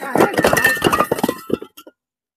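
Fired clay bricks clinking and clattering against one another as they are pulled off a stack and dropped aside, with a bright ringing clink now and then. The clatter stops shortly before the end.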